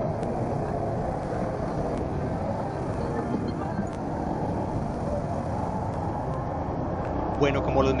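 Small Honda motorcycle ridden through city traffic: its engine runs under a steady rush of road and wind noise.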